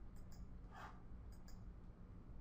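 A few faint computer mouse clicks over a low, steady room hum.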